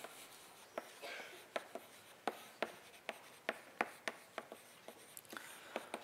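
Chalk on a blackboard while words are written: a string of short, sharp taps and scrapes, irregularly spaced, a couple or so each second.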